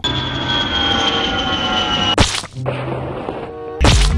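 Edited meme sound effects: a long, high tone gliding slowly down in pitch, then a sharp whack about two seconds in. Music with a heavy bass starts near the end.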